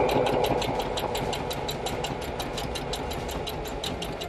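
Singer Heavy Duty 4452 sewing machine stitching through one layer of leather: the motor runs steadily under a fast, even clatter of needle strokes, several a second, easing slightly in level towards the end.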